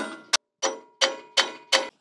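A hammer tapping a steel pin punch against the steel grill guard to mark bolt holes for drilling: about six sharp, evenly spaced strikes, each ringing briefly.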